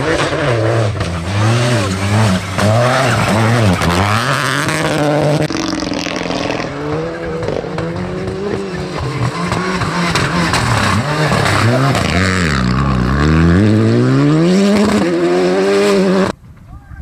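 Peugeot 208 and then Renault Clio rally cars driven hard on loose gravel. The engines rev up and drop back again and again through gear changes and corners, with the tyres skidding on the gravel. The last few seconds are one long rising pull under acceleration.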